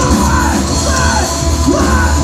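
Thrash metal band playing live: distorted electric guitars, bass and drums, with a shouted vocal line over them.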